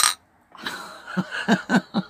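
A woman's breathy, half-stifled laughter that breaks into a few short voiced 'ha' pulses in the second half, after a brief sharp sound at the very start.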